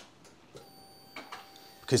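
Faint, steady electrical whine from a Triumph Rocket 3 just switched on with its ignition. It starts about half a second in, has a few light clicks, and stops just before the end.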